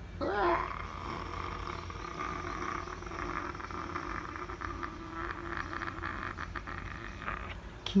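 A voice holding one long note for about seven seconds, wavering in pitch at the start, then steady and somewhat buzzy, until it stops shortly before the end.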